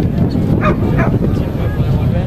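Steady rumble of wind on the microphone, with a dog barking a few short, sharp barks about half a second to a second in.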